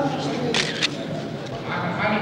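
A man's voice speaking, with a brief crisp high-pitched noise about half a second in.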